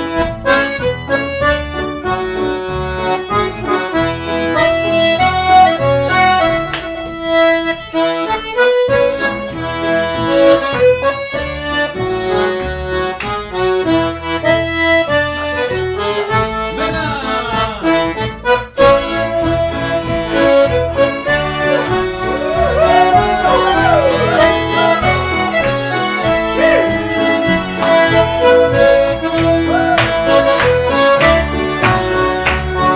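A lively dance tune in the Québec traditional style, played by a piano accordion, several fiddles and an upright bass. It keeps a steady beat, with foot percussion (podorythmie) tapped on a wooden board.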